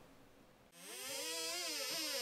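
Near silence, then about three-quarters of a second in a synthesized swell fades in, its pitch rising and then falling: the opening of a logo intro sting.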